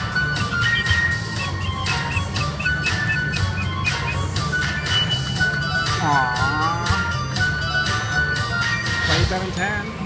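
Lil Red video slot machine playing its free-spins bonus music and reel sound effects: jingling tones over a steady run of clicks, with a quick string of high tinkling notes about a second and a half in and a swooping sound effect about six seconds in.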